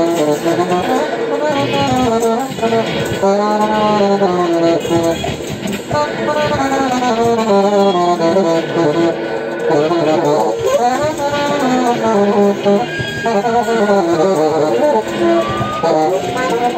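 Live free-improvised music: a dense, sustained texture of pitched tones that keep sliding up and down in pitch, with no steady beat.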